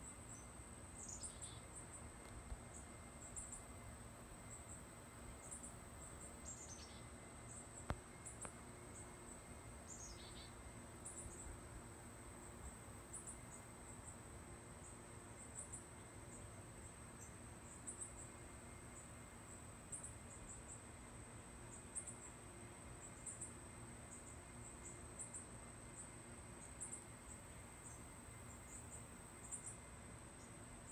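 Faint insect chorus: a steady high-pitched trill that swells in short pulses about once a second. Three brief descending bird calls come in the first ten seconds.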